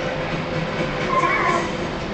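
Background television audio: a steady rumbling noise with faint voices in it.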